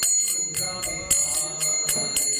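Karatalas, small hand cymbals, struck in a steady rhythm of about four strokes a second, ringing between strokes.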